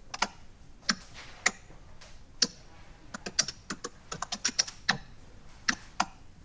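Irregular sharp clicks, a few spaced apart and then a quick run of them in the second half, like keys being typed on a keyboard.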